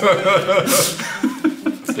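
Men laughing and chuckling together, with a sharp breathy burst just under a second in and then a run of short, quick "ha" pulses.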